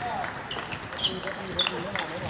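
Table tennis rally: the plastic ball clicks off rackets and the table in quick alternating hits, about two a second, some bounces ringing with a short high ping.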